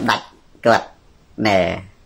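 Speech only: a man saying two short syllables with pauses between them.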